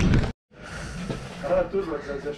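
Mountain bike rolling fast on a dirt track with wind on the camera microphone, cut off suddenly after about a third of a second. After a brief silence comes a quieter background with faint voices.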